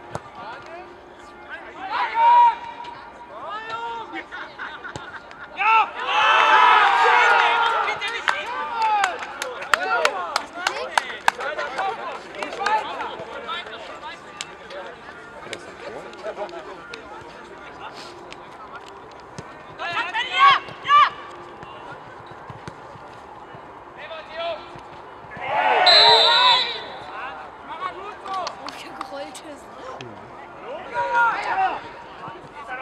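Shouts and calls of football players and spectators, in loud bursts about two seconds in, for a couple of seconds around six seconds, near twenty seconds and around twenty-six seconds, with scattered short clicks in between.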